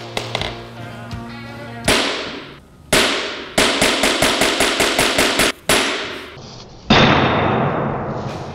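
A small hammer striking a pane of bulletproof glass. There are two single blows, then a rapid run of about a dozen quick blows, then one loud blow that rings on as it dies away. The glass holds, with only a crack at the bottom. Background music plays underneath.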